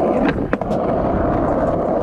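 Skateboard wheels rolling over rough, cracked asphalt, a steady rumble, with two short sharp clicks within the first second.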